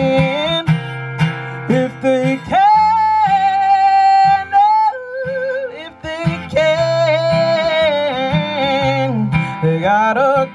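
A woman singing long held notes that slide and bend, over a live acoustic guitar accompaniment in a blues song.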